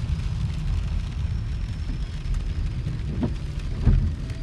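Steady low rumble inside a car's cabin in slow traffic, with light rain on the car, and a short thump near the end.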